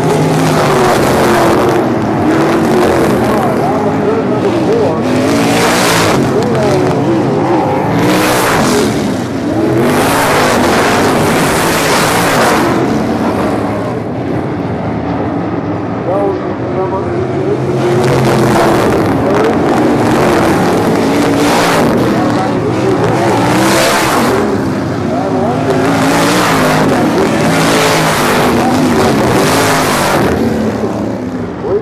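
Methanol-burning sprint car engines running hard on a dirt oval. The engine note rises and falls with the throttle, and a loud wash of noise comes every few seconds as cars pass.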